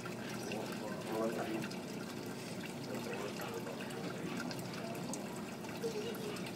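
Steady trickling and splashing of water in a running aquarium system, with faint voices underneath.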